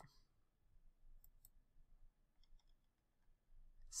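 Near silence with a few faint clicks of computer input while a notebook cell is run: two about a second in, then a small cluster around two and a half seconds in.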